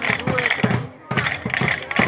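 Scattered, irregular taps of children's drumsticks, mixed with children's voices.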